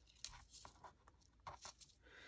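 Near silence with a few faint rustles and small clicks of paper and lace being handled and pressed down by hand.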